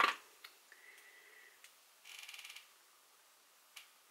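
Faint handling of small plastic cosmetics packaging: a clack at the start, a brief run of rapid ticking about two seconds in, and a single click near the end.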